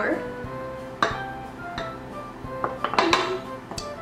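Background music, with a few clinks and knocks of a bowl against the stand mixer's bowl as flour is tipped in.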